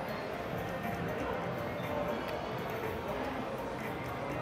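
Slot machine playing its bonus-round music and spin sounds over the steady murmur of a casino floor, with no single event standing out.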